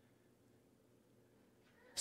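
Near silence: room tone with a faint low hum, in a pause between spoken phrases.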